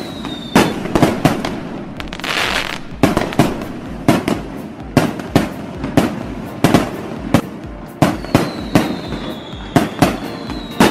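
Fireworks and firecrackers going off in an irregular run of sharp bangs, one or two a second. There is a hissing burst about two seconds in and a long high whistle, falling slightly in pitch, near the end.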